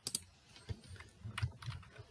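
Computer keyboard keys clicking quietly, about six separate clicks, as the presentation is moved on to the next slide.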